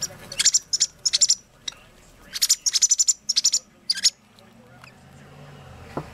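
Young robin calling: quick, high, thin chirps in two bunches, the second longer, then it falls quiet.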